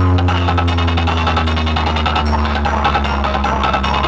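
DJ remix music played loud through a large sound system of bass cabinets and horn speakers: a long held deep bass note under a fast, ticking beat.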